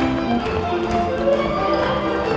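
Folk dance music with string instruments playing, over quick taps and stamps of children's dance shoes on the hall floor.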